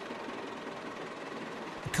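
A vehicle engine running steadily at idle.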